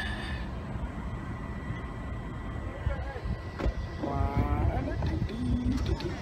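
Low, steady rumble of cars driving in a crowded lot, with two sharp clicks a little after three seconds and a faint voice just past four seconds.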